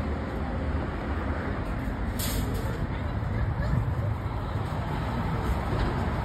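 Steady rumble of road traffic, with a short hiss about two seconds in.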